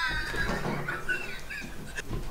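Hard, high-pitched laughter in short pitched gasps that trail off.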